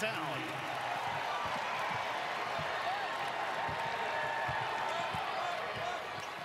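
Arena crowd cheering steadily in a large hall, the crowd's reaction to a putback dunk just made.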